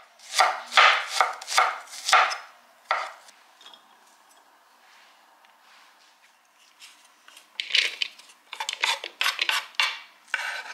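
Knife chopping on a wooden cutting board, about two or three strokes a second, stopping about three seconds in. Near the end comes a quick run of taps and scrapes: a wooden utensil pushing cut fruit and vegetables off a wooden board into a wooden salad bowl.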